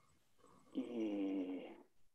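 A person's drawn-out hesitation sound "ええ" ("ehh"), held on one steady pitch for about a second.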